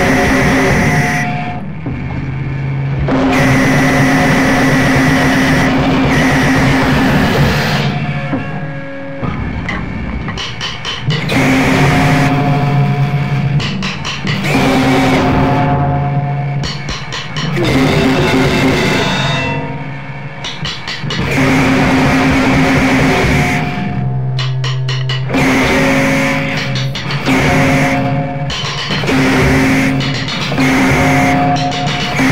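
Loud noisecore/gorenoise music: dense, distorted-sounding band noise with held droning tones that shift every second or two, breaking off briefly several times.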